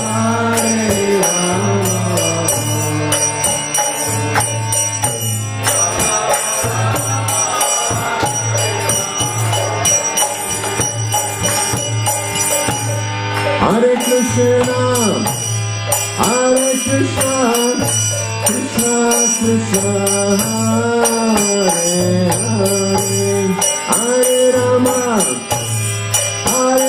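Harmonium playing a kirtan melody over a steady drone, with a man singing a devotional chant, his phrases clearest in the second half. Small hand cymbals jingle in time throughout.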